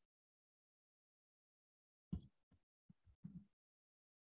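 Near silence on a video-call line, broken by a few short, faint blips in the second half.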